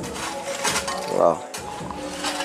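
Background music with steady held notes under a single short spoken word, with a few faint light clinks.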